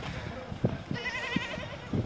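A short, quavering high-pitched call, like an animal's bleat, about halfway through, with a few soft knocks around it.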